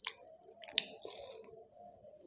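Close-miked chewing of a fried samosa: soft, wet mouth sounds broken by a few sharp clicks, the loudest a little under a second in.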